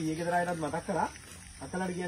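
A man speaking in short phrases, with a brief pause about a second in.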